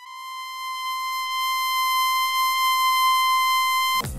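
A steady, high electronic tone with a stack of even overtones, swelling in over the first second or two, then holding one pitch and cutting off sharply at the end.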